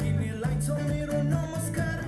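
Electric guitar playing a short single-note lead fill with hammer-ons, notes changing every few tenths of a second over a held low note.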